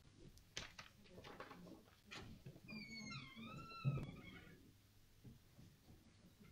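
Quiet room noises in a pause: a few small clicks, then a high squeak that glides down and back up for about a second, ending in a low thump about four seconds in.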